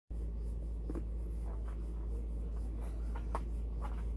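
Steady low background rumble, with several faint short high-pitched sounds scattered through it.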